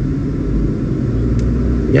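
Steady low rumble, like a car running, recorded on a phone's microphone.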